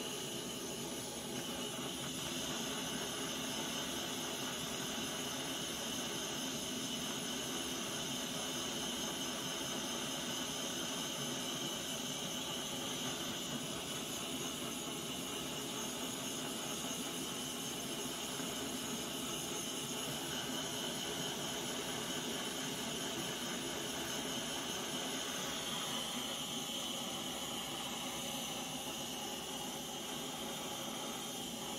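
Handheld torch flame hissing steadily as it is passed slowly over wet acrylic paint to raise silicone cells.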